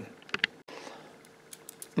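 Nickels clicking against one another as a hand picks through a small stack of coins: a couple of light clicks about a third of a second in, and a few fainter ones near the end.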